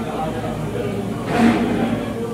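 Indistinct voices over a steady low room hum in a busy dining room, with one louder voice sound about one and a half seconds in.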